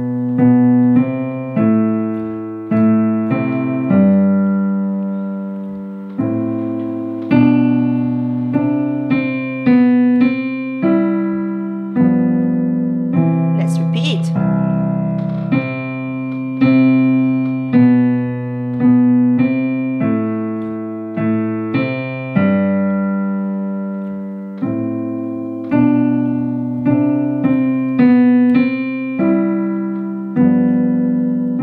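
Piano played with both hands in a steady beat, chords and melody notes struck and left to ring and fade: the teacher's duet part accompanying a beginner's five-finger piece.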